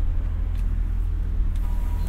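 The 6.2-litre V8 of a 2007 GMC Yukon XL Denali running at low speed as the SUV rolls up to a fuel pump, a steady low engine sound heard from inside the cabin with the windows open.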